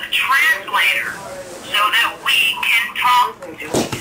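Indistinct voices talking, with a brief thump near the end.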